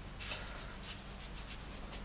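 A paintbrush rubbing and scratching across textured watercolour paper in quick, faint, repeated dry-brush strokes.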